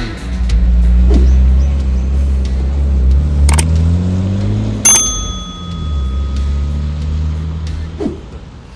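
BMW E34's supercharged M50B25 straight-six running as the car rolls past at low speed, its note rising and then falling around the middle. About five seconds in a single bell-like ding rings out, the notification-bell sound of an on-screen subscribe animation.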